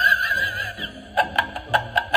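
Haunted Halloween telephone decoration playing a spooky recorded effect through its small speaker: a wavering eerie tone, then a quick run of short staccato pulses, about five a second.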